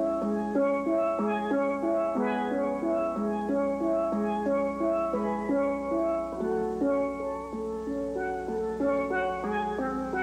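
Steel pan played solo: a steady run of ringing notes, often several sounding at once.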